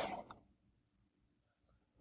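A spoken word trails off, then near silence with a faint single computer-mouse click about a third of a second in.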